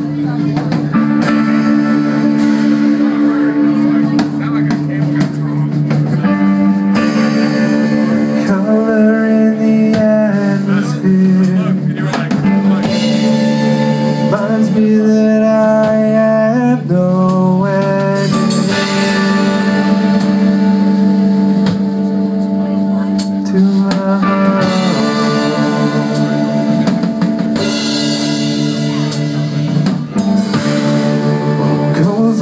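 Live metal played loudly on electric guitar and drum kit: sustained guitar chords and riffs over steady drumming with frequent cymbal and drum hits.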